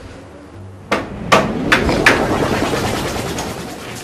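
Four knocks on a door, a little under half a second apart, starting about a second in, over background music.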